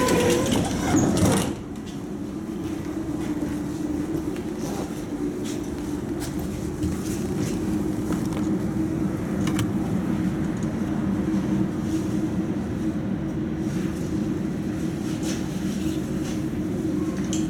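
Tatra T3 tram's doors shutting with a loud burst of noise in the first second and a half, then the tram running with a steady low hum and occasional sharp clicks.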